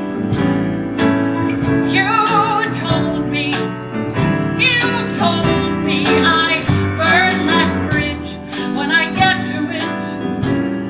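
A female singer's voice with vibrato, backed by a live band of piano, bass, drums and guitar, playing a slow song.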